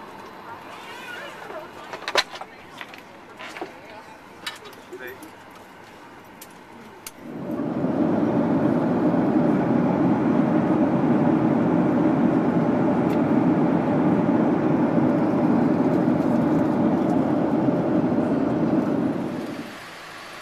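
Airliner cabin noise in flight: a loud, steady rushing drone of engines and airflow that cuts in suddenly about seven seconds in and holds level until just before the end. Before it, a quieter cabin with a few sharp clicks.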